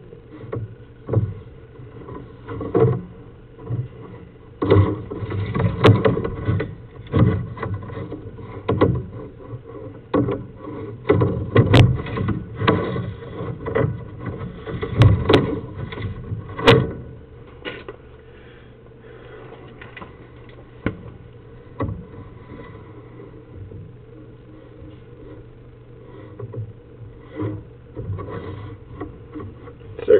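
Irregular knocks and clunks from a sewer inspection camera rig being handled, its push cable worked a little back and forth, over the rig's steady low electrical hum. The knocks bunch together in the first half and thin out to a few near the end.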